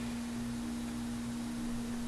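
A steady, low electrical hum with a single even pitch, lying under the room's background noise.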